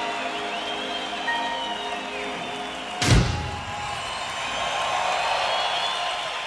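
Live band ending a song: a held keyboard chord with whistles from the crowd over it, then a single loud crash-like hit about three seconds in. A large stadium crowd cheers more loudly after the hit.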